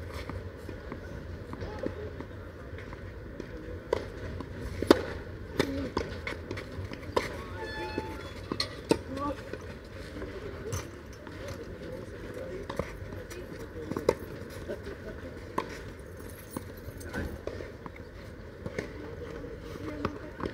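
Tennis balls struck by rackets and bouncing on clay, heard as sharp pops at irregular intervals, with faint voices of players in the background.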